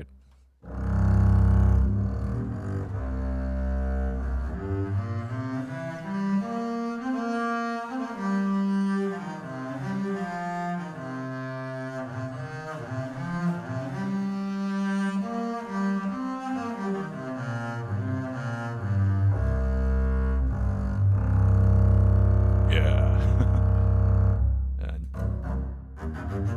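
Sampled solo contrabass (double bass) from the CineStrings Solo library, played legato from a keyboard: a bowed line of sustained notes joined one into the next. It starts low, climbs into a higher register through the middle, and comes back down to low held notes near the end.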